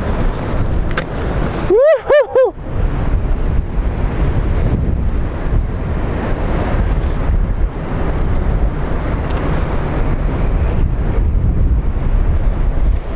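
Fast river rapids rushing steadily, with wind buffeting the microphone. About two seconds in, a brief high call of three quick rising-and-falling notes rises above the water.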